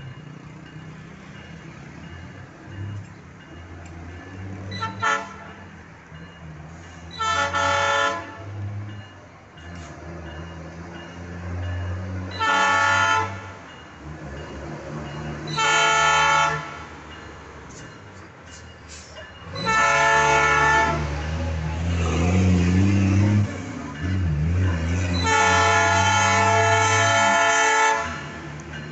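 KCSM diesel freight locomotives approaching, the lead unit sounding its air horn: a brief toot about five seconds in, then five longer blasts, the last held about three seconds, over a low engine rumble that grows louder as the train nears.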